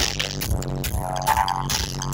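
Dub music played loud through a festival sound system's speaker stacks, with deep repeated bass notes and a tone that rises through the middle.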